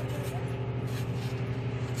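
A steady low mechanical hum, unchanging in pitch, with a few faint brief rustles over it.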